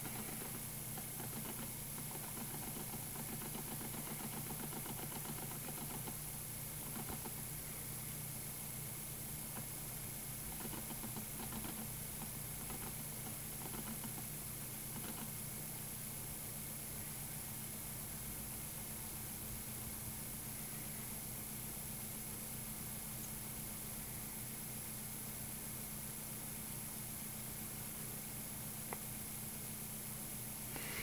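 Homemade magnet pulse motor running steadily at speed, a constant even hum with no change in pitch.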